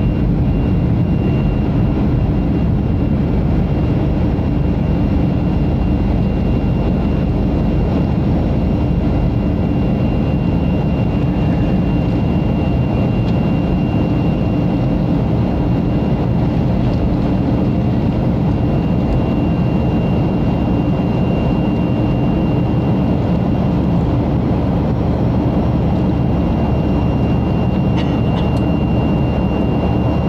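Cabin noise of a Boeing 737-500 in its climb: a steady, deep rumble of the CFM56-3 turbofan engines and rushing air, with a thin high whine held throughout. A brief light tick sounds near the end.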